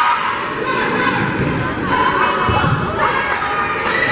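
Volleyball rally in a gym: a few sharp slaps of the ball off players' hands and arms, about one and a half seconds apart, over players calling out and spectators talking, echoing in the large hall.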